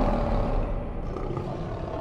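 Lion's roar sound effect in a logo sting, slowly fading away.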